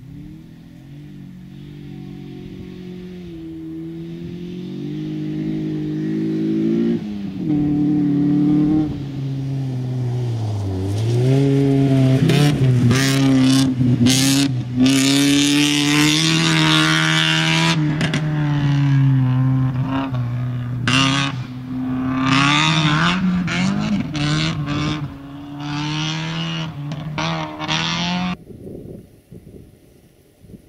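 Opel Corsa rally car's engine approaching at speed on gravel, growing louder. About ten seconds in the pitch dips, then it revs hard with rises and falls as it passes close and pulls away. The sound cuts off abruptly near the end.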